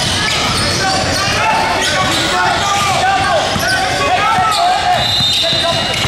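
Basketball dribbled on a hardwood gym floor, with many short sneaker squeaks as players cut and stop, most of them in the middle seconds. Voices echo in the large gym throughout.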